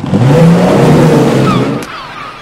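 Outboard motor on a rigid inflatable boat running fast, with the rush of its wake; the engine note climbs in the first half second, holds, then drops away near the end.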